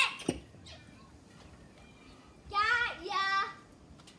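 A child's high voice: two short calls with gliding pitch, a little after halfway through. A brief low thump just after the start.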